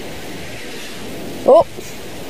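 Steady, even outdoor background noise with no distinct events, cut by a man's short 'Oh' near the end.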